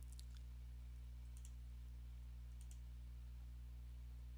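Faint clicking at a computer: three quick pairs of clicks, a little over a second apart, over a steady low electrical hum.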